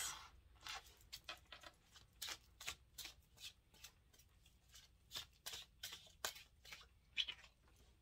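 Faint, irregular ticks and soft slides of tarot cards being handled: a card drawn from the deck and laid face up on a tabletop.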